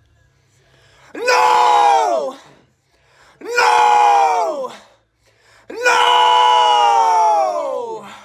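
Three men shouting in unison into a studio microphone, recording shouted group vocals: three long held yells, each sliding down in pitch at its end, the third the longest.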